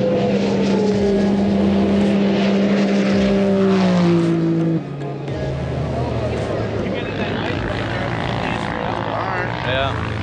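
A racing snowmobile engine running hard at a steady high pitch that slowly falls as the machine passes, cutting off abruptly about five seconds in. Quieter mixed engine noise follows.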